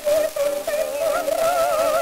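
An acoustic-era 78 rpm disc recording of an operatic duet with orchestra: a soprano sings high notes with a wide vibrato over the accompaniment. The sound is thin and narrow, with steady crackle and hiss from the very worn disc surface.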